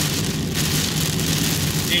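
Heavy rain falling on a car's windshield and body, heard from inside the cabin, over the steady low hum of the car's engine and tyres on the wet road.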